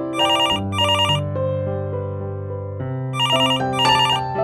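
Telephone ringing in double rings over background music: two short trilling rings, a pause of about two seconds, then two more. Slow sustained chords play under them.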